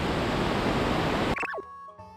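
Steady rush of river water below a waterfall, cutting off suddenly about a second and a half in. A quick falling swoosh and quiet background music follow it.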